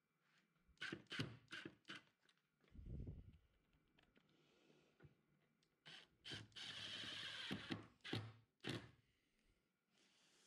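Quiet workbench handling knocks and clicks, then a cordless Milwaukee Fuel impact driver running for about a second and a half past the middle, driving a screw into a small wooden block.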